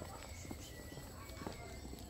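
Footsteps of people walking on a paved lane, a few soft steps and scuffs over a faint low rumble.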